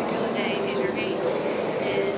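A woman speaking into a press-conference microphone, over a steady low hum in the room.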